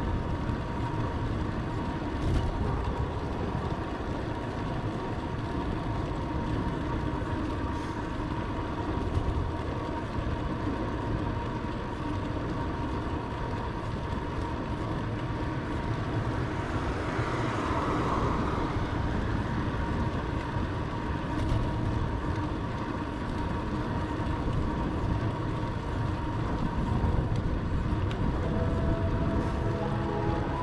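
Wind rushing over the microphone of a camera mounted on a bicycle riding at about 29 km/h, with tyre and road noise: a steady rushing noise that swells briefly about halfway through.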